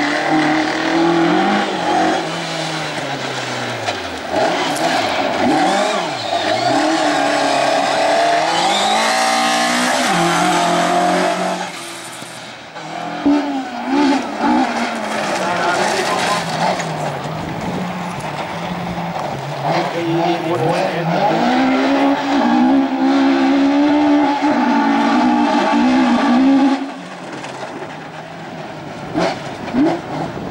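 Rally cars driven hard on loose gravel: the engines rev up and drop back again and again through gear changes, with tyres scrabbling and sliding. A few sharp bangs come a little before halfway, as a Citroën DS3 rally car takes over on the course.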